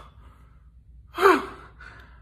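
A person's sharp, shocked gasp about a second in, its pitch falling, followed by a softer breathy exhale.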